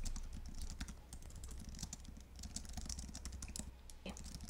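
Quiet, continuous typing on a computer keyboard: a fast, uneven run of soft key clicks.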